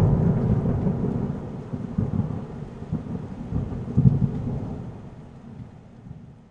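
A thunder-like rumble sound effect that starts suddenly, swells a couple of times and fades away over several seconds.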